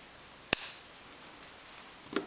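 A single sharp snip of scissors cutting a yarn tail, about half a second in.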